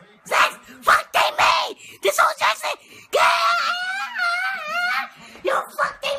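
Excited shouting voices: a few short yells, then one long wavering scream about three seconds in that lasts nearly two seconds, then more short shouts near the end.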